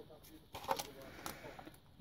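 Quiet pause with a few faint light clicks and rustles from paper craft embellishments being handled by hand.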